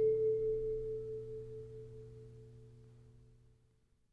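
The final strummed acoustic guitar chord of a song ringing out and dying away steadily, fading to silence a little over three seconds in.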